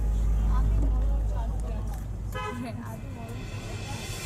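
Street traffic with a low vehicle engine rumble and scattered voices. A vehicle horn gives a short honk about halfway through.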